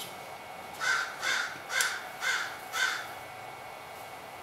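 A crow cawing five times in a row, about two caws a second.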